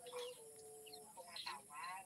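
Faint voices, one drawing out a long steady note early on, then more voice-like sound near the end, with a few short high bird chirps.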